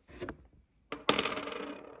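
Steel circle fishing hooks clattering against each other and a hard surface as one is set down and another picked up: faint clicks at first, then a sharp metallic clatter about a second in that rings briefly and fades.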